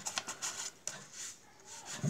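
A deck of Choice cloverback playing cards being handled: faint rubbing and light clicks of the cards sliding against each other, with one sharper tick a little under a second in.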